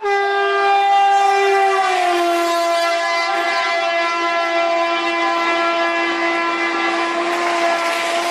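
Train horn sound effect: one long held blast whose pitch dips slightly about two seconds in, over the rushing noise of a moving train, marking the train pulling away.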